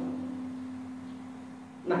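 A public-address system ringing in a single steady low tone that slowly fades, typical of a microphone's feedback ring. A short spoken word cuts in right at the end.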